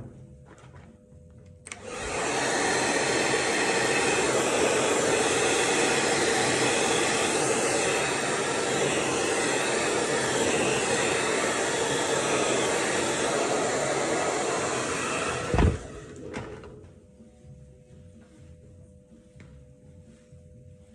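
Handheld hair dryer switched on about two seconds in and blowing steadily for roughly fourteen seconds, then cut off with a thump.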